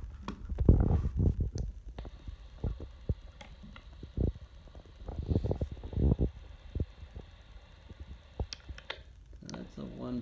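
Irregular low thumps and knocks from hands handling a Baofeng handheld radio and its coax, with a few small clicks. A faint steady hiss switches on about two seconds in and cuts off near the end.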